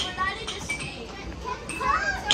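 Children's voices with a few sharp clicks.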